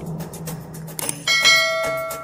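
Intro sound effects: quick clicks over a low hum, then a bright bell-like chime struck about a second in that rings on.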